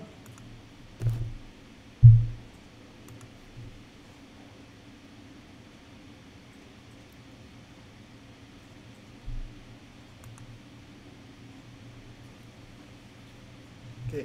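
Quiet room tone with a steady low hum, broken by a few dull thumps, the loudest about two seconds in, and faint clicks of a computer mouse being used.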